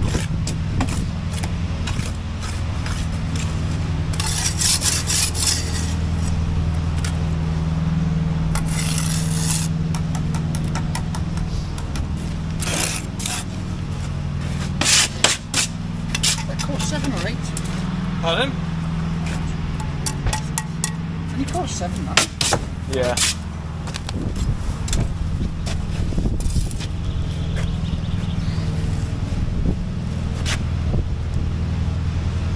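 Steel bricklaying trowels scraping and tapping mortar and breeze blocks, heard as a run of short scrapes and knocks, over a steady low hum.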